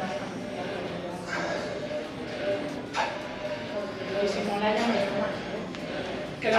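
Indistinct voices talking in the background, with one sharp click about three seconds in.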